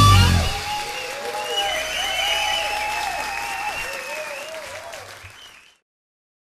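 A live blues-rock band's final guitar-led chord breaks off in the first half second. Audience applause follows, with wavering high-pitched cheers over it, and fades away near the end.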